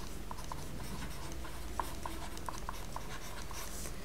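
Stylus writing on a digital tablet: a scatter of faint, short taps and scratches as strokes are drawn, over a low steady hum.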